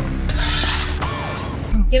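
A steel shovel scraping along a concrete slab as broken concrete rubble is scooped up, one scrape in the first second.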